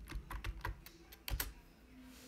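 Computer keyboard keys typed in a quick run as a password is entered, ending with a louder click about a second and a half in as the login is submitted.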